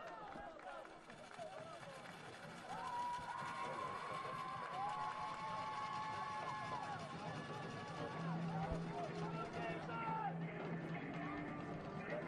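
Faint, distant voices of players and people on the sidelines calling and chattering across an open field, with a couple of long, drawn-out calls in the middle.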